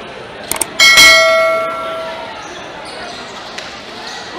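A couple of quick clicks, then about a second in a bright bell ding that rings on and fades away over about a second: the click-and-bell sound effect of a YouTube subscribe overlay.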